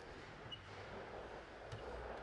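Quiet steady background hum with a few faint, light clicks of a hand tool working the small screws of a lathe chuck on a welding positioner.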